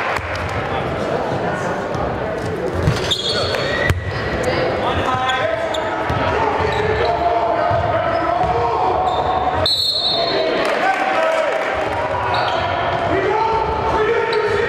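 Basketball gym game sound: a basketball bouncing on the hardwood court amid indistinct voices echoing in the large hall. The sound breaks off abruptly a few times where the footage is cut.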